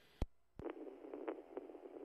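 Police radio channel between transmissions: a sharp click as a transmitter keys up, a second click, then the steady hiss of the open channel just before the next voice comes on.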